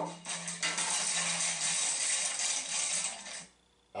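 A bag of Lay's potato chips crinkling and rustling for about three seconds as it is handled and opened, stopping shortly before the end.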